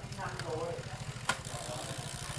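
Road bike's Shimano Tiagra drivetrain running as the cranks are turned by hand: the chain passes over the chainrings and cassette with a steady rapid whirr. There is one sharp click a little past a second in.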